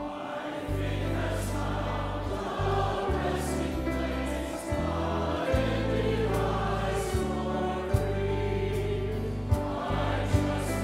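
A church choir singing a gospel-style hymn with a band of grand piano, acoustic guitar and bass guitar. The bass notes change every second or so, and a few sharp drum hits come in the second half.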